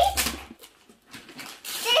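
Gift wrapping paper being torn and rustled in short bursts, with a near-silent pause around the middle. A child's voice is heard briefly at the start and again near the end.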